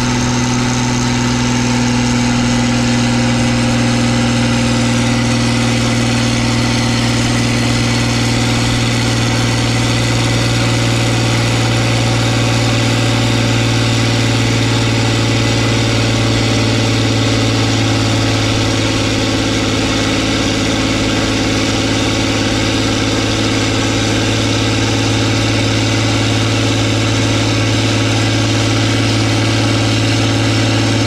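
John Deere tractor's six-cylinder diesel running steadily at high revs while it is tested on a PTO dynamometer, a deep, even roar. Its pitch shifts slightly about two-thirds of the way through.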